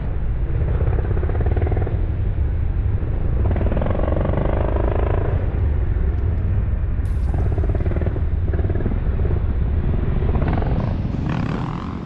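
Motorcycle engines running under a loud steady low rumble. The revs climb and fall a few seconds in, and again in the middle.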